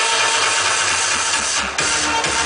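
Loud electronic dance music from a club sound system during a DJ set: a dense, noisy stretch over a deep bass, with a short break near the end before the beat carries on.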